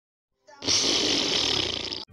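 Explosion sound effect for a meteor impact in a cartoon: a loud, steady rush of noise that starts about half a second in and cuts off abruptly at the end.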